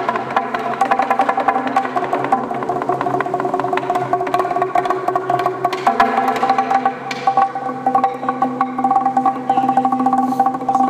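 Txalaparta: wooden planks struck with upright sticks by two players in a fast, dense interlocking rhythm. The strokes ring out at a few fixed pitches.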